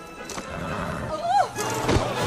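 A horse whinnies once, about a second in, its call rising and then falling in pitch, over background music. A sudden thump follows near the end.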